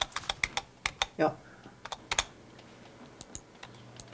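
Typing on a desktop computer keyboard: irregular keystroke clicks, busiest in the first two seconds, with a few more strokes near the end.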